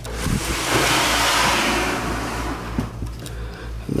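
A plastic snake tub being slid out of a rack shelf: a scraping rush lasting about three seconds, loudest in the middle, with a few short knocks.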